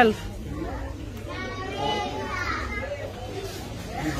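Indistinct voices talking in the background, fainter than the main speaker, with no other clear sound.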